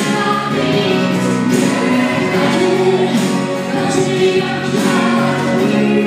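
Live acoustic performance of a rock ballad: a male and a female vocalist singing together over acoustic guitar and band accompaniment.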